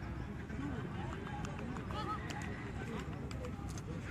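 Distant, indistinct voices of several people over steady outdoor background noise.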